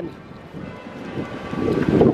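Wind buffeting the handheld camera's microphone: a noisy low rumble that swells in gusts and grows louder in the second half.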